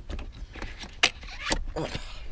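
Rubber gear-shift boot being pulled up a manual car's shifter, rubbing and scuffing, with two sharp clicks about a second and a second and a half in.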